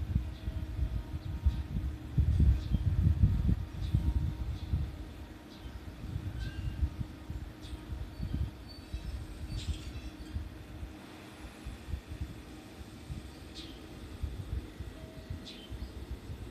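311 series electric train pulling away from the station platform: a low rumble that is loudest a few seconds in, then fades as the train draws away. Faint short high chirps run through it.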